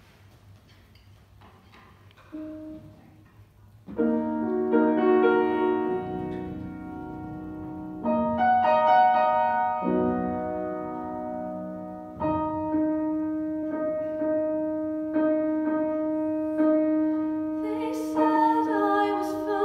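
Grand piano playing a slow introduction: after a couple of quiet seconds and a single soft note, sustained chords are struck, a new one every two to four seconds, before the voice enters.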